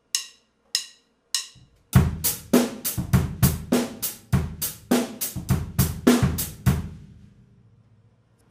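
A stick-click count-in, then a drum kit groove with kick, snare and eighth-note hi-hat, the hi-hat accents played on the offbeats by an inverted up-down wrist motion: the accented down stroke hits the hi-hat edge with the shoulder of the stick, the light up stroke the top with the tip. The groove stops about seven seconds in.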